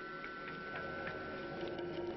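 Ticking sound effect in a commercial's soundtrack: a steady run of short clock-like ticks over a held high tone.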